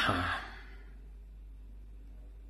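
A man's sigh: one short, breathy exhale right at the start that fades within about half a second, followed by a faint steady low hum.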